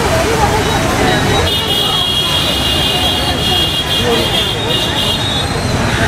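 Steady rush of a flooded river churning around bridge piers, with a crowd's voices over it. A long high-pitched tone sounds from about a second and a half in until about five seconds.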